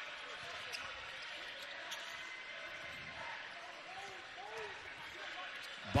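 Basketball arena during live play: a steady crowd murmur, with a few dribbles of the ball on the hardwood court and sneaker squeaks near the middle.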